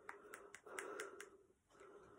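Very faint breathing close to the microphone, in about three short breaths, with a few small clicks.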